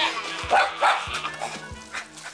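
A small dog barking at a cat, several short barks about half a second apart, over background music.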